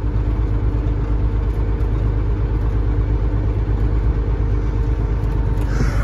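Cat 3406E diesel engine of a Freightliner FLD120 semi truck running steadily, heard from inside the cab as an even low drone with a steady hum.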